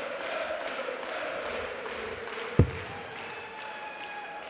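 A single dart thuds into a Unicorn Eclipse Pro sisal dartboard about two and a half seconds in, over the steady background noise of an arena crowd.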